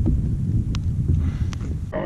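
Wind buffeting the microphone as a low, uneven rumble, with three faint clicks spread through it.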